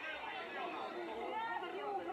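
Several people's voices talking over one another at once, a jumble of crowd chatter in a scuffle.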